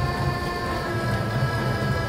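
Hohner Corona button accordion playing a waltz: held chords ring as steady reed tones over a pulsing bass line.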